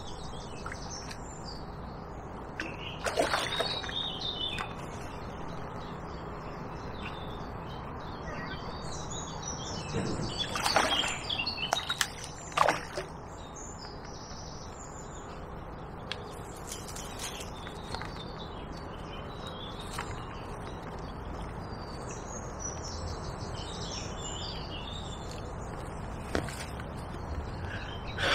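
Birdsong chirping steadily over faint outdoor noise, with splashes from a hooked tench thrashing at the surface in the margin: one about three seconds in and a louder cluster around ten to thirteen seconds in.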